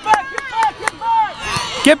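Shouting voices of spectators and young players at a soccer game, with a few sharp clicks scattered through. A loud, close shout starts right at the end.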